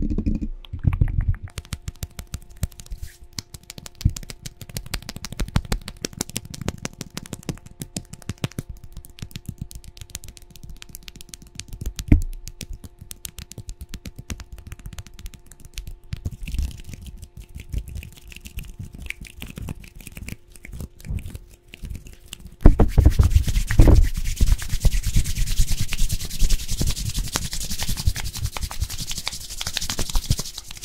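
ASMR hand sounds close to a condenser microphone: a fast, dense run of fingertip taps and scratches, then about two-thirds of the way in a louder, rougher rubbing with a hiss and low rumble, as of hands rubbed over and against the microphone.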